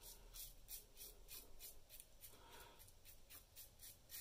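Faint rapid scraping of a double-edge safety razor with a Voskhod blade cutting stubble through shave-soap lather, in short strokes about five a second.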